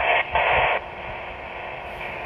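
Two short bursts of static-like hiss, the second ending under a second in, then a faint steady hiss.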